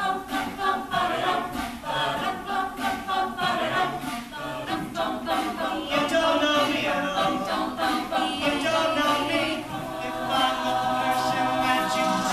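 Mixed male and female a cappella group singing in harmony, many voices layered, live on stage.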